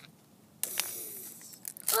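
A brief quiet, then a sudden rustling, crinkling noise about half a second in that lasts about a second.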